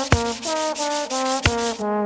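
Trombone playing a quick line of short, separate notes, layered with a scratchy push-broom sweeping on a dusty concrete floor that stops near the end. Sharp knocks land just after the start and again about a second and a half in, in time with the music.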